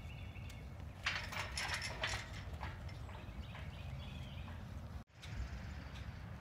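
A mule's hoofbeats on dirt, with a clattering metal rattle about a second in that lasts about a second.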